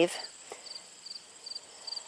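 Crickets chirping: short high chirps repeating about twice a second, with a fainter continuous high trill behind them.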